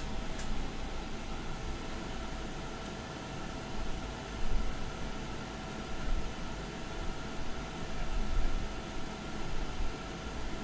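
Steady fan hum from a laser marking machine that is switched on, with a few soft knocks as a digital caliper is handled against the metal plate.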